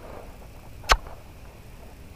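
A single sharp click a little before the middle, over a faint, steady background.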